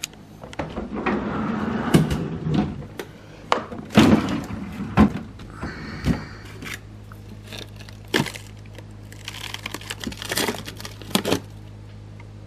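Refrigerator freezer drawer pulled open and frozen food rummaged through: plastic bags crinkling and hard frozen packages knocking against each other and the drawer, with several sharp knocks. A steady low hum sets in about halfway through.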